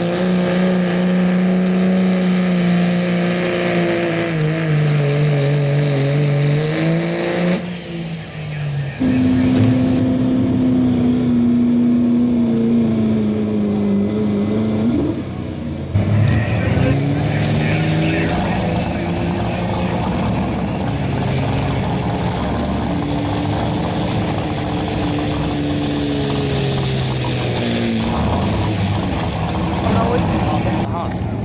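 Diesel pickup truck engines pulling hard under heavy load against a weight-transfer sled. The engine note holds, sags and climbs as the load builds, with abrupt changes about 8, 16 and 28 seconds in as one truck's pull gives way to the next. A high whistle falls in pitch about eight seconds in.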